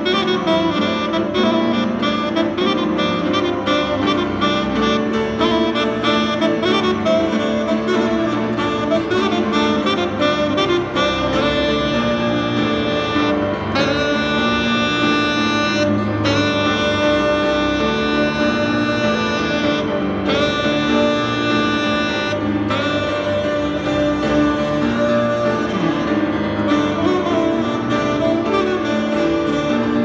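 Tenor saxophone and grand piano playing jazz as a duo, the saxophone carrying the melody over the piano. In the second half the music settles into longer held notes.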